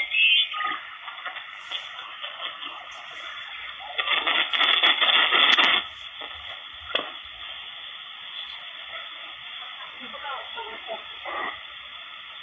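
Malachite DSP SDR V5 receiver's speaker giving hiss and band noise in upper sideband as it is tuned across the 27 MHz CB band. A louder burst of signal comes about four seconds in and lasts nearly two seconds.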